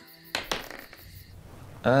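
A single brief sharp noise about a third of a second in, fading within half a second, followed by a quiet stretch before a man starts speaking near the end.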